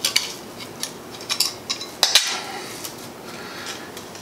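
Small metallic clicks and clinks of a steel wire-clamp tool and wire being worked as the wire end is folded over: a handful of separate ticks, with the sharpest clink about two seconds in.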